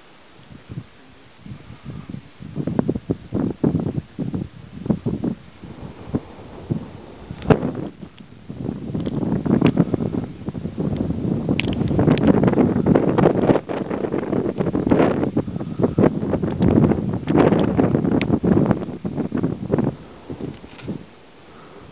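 Wind buffeting the microphone in irregular gusts, scattered at first and then denser and louder from about eight seconds in.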